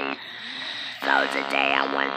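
Speech produced through a handheld electrolarynx: a monotone buzz held at one fixed pitch, shaped into words. The buzz cuts off just after the start, leaving a soft hiss for under a second, then starts again with more words about a second in.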